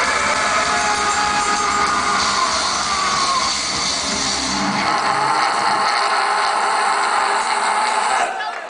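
Live rock band's distorted electric guitars left ringing in feedback and noise as a song ends, with several whining tones gliding in pitch. The bass and drums drop away about halfway through, leaving the high guitar noise on its own.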